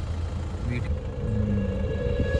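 Low steady rumble of a car moving slowly, with a faint steady hum above it.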